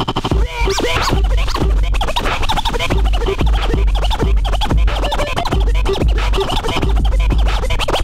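Turntable scratching over a hip-hop beat: a record pushed back and forth by hand makes quick up-and-down pitch sweeps, chopped into short cuts by the mixer's fader, over a heavy bass beat.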